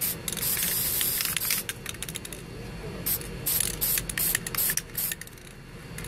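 Aerosol spray paint can spraying white paint through a cardboard stencil onto a car fender. There is a long hissing burst in the first couple of seconds, then several shorter spurts around the middle as the edge is faded.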